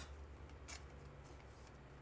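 Near silence: a steady low hum, with a faint click about a third of the way in and a weaker one later as a trading card is handled.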